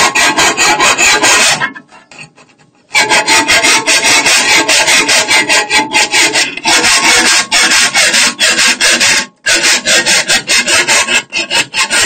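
A 1 hp chaff cutter chopping green fodder, a rapid run of harsh, rasping cutting strikes. It breaks off for about a second near two seconds in and again for a moment near nine seconds.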